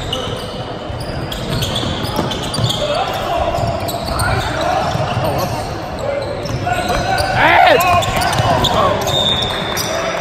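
Basketball bouncing on a hardwood gym floor during play, with shouts and chatter of players and spectators echoing around a large gym.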